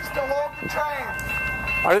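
A locomotive horn sounds one steady, held note under people talking nearby, and stops shortly before the end.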